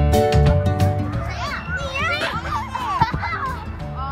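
Upbeat background music with a steady beat. After about a second it drops back and a group of children shout and squeal in high voices over it.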